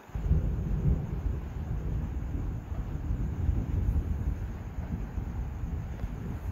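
A steady low rumble that starts abruptly and carries on, with no clear tone in it.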